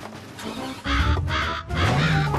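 Cartoon bird squawking in alarm: three harsh caws in quick succession, starting about a second in.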